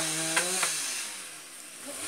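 A two-stroke chainsaw running at high throttle, then easing off so its pitch and loudness slide down for about a second before it revs back up near the end.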